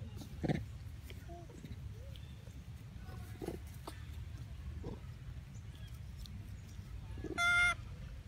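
Baby long-tailed macaque giving a few faint short squeaks, then one loud high-pitched cry near the end.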